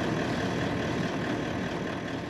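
A Toyota Land Cruiser's engine idling steadily.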